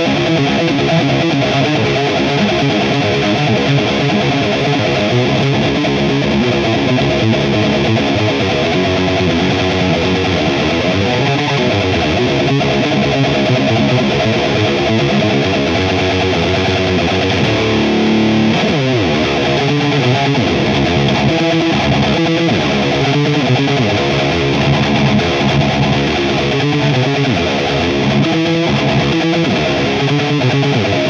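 Heavily distorted electric guitar played through a Mesa/Boogie Royal Atlantic RA-100 tube amp in 100-watt mode, fast rhythmic metal riffing throughout, with a falling slide down the neck about eighteen seconds in.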